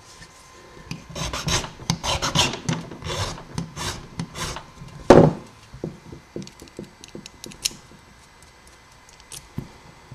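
A hand file rasping across a metal key blank in short strokes, about three or four a second, cutting a pin position in the key. About five seconds in comes a single sharp knock, the loudest sound, followed by faint small clicks of handling.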